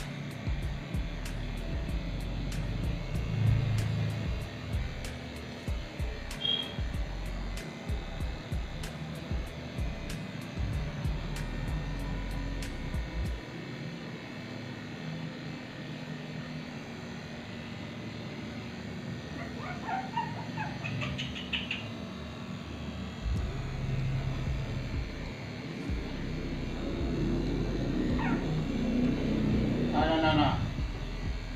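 Electric dog-grooming clippers running as they trim a puppy's coat. A Shih Tzu puppy gives short rising whining cries about twenty seconds in and again near the end, as it squirms away from the clippers.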